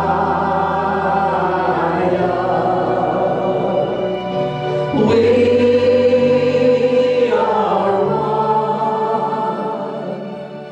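A group of voices singing a slow worship song in long held notes over sustained chords that change every two to three seconds.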